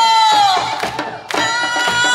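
Taepyeongso, the Korean double-reed shawm, playing a loud held note that bends downward, drops out briefly just past halfway, then comes back on a steady high note. Drums keep a steady beat underneath at about four strokes a second.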